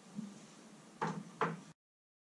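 A glass mineral water bottle set back down on a wooden shelf among other bottles: a soft knock, then two sharper knocks close together about a second in, after which the sound cuts off abruptly.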